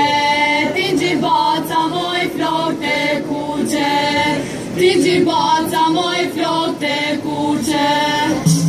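A group of voices singing a Macedonian folk song together in short sung phrases, with occasional tambourine jingles.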